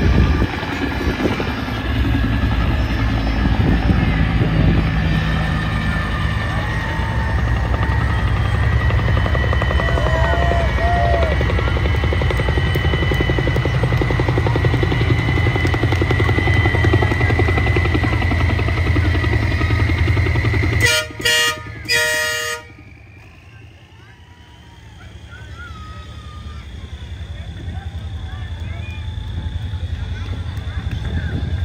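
Military six-wheel cargo truck's engine running with a steady low rumble as it rolls past. About two-thirds of the way through come three short horn blasts, the last a little longer, after which the sound drops away sharply.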